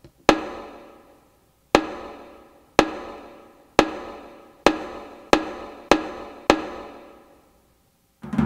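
Percussive film soundtrack played to an audience: eight sharp struck hits, each ringing away, coming closer and closer together.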